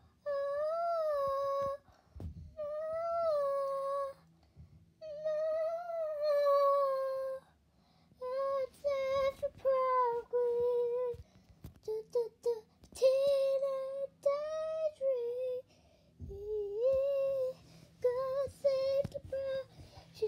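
A high female voice singing a melody without clear words, unaccompanied, in long held and gliding notes with short breaks between phrases.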